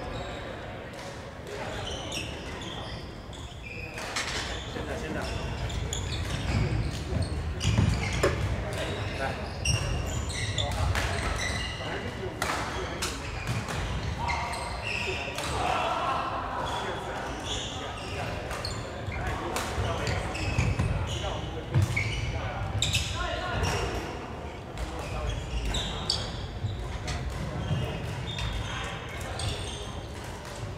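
Badminton rally: sharp racket strikes on the shuttlecock at irregular intervals, with footfalls on the wooden court and background voices, echoing in a large sports hall.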